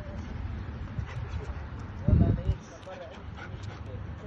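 A Belgian Malinois whining faintly during heelwork. A brief, loud low thump comes about two seconds in.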